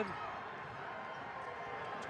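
Steady arena crowd noise during live basketball play, with a ball being dribbled up the court.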